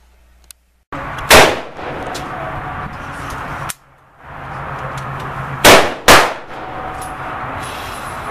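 Three pistol shots: one about a second in, then a quick pair about half a second apart near the middle, each very loud and sharp, over a steady noisy background.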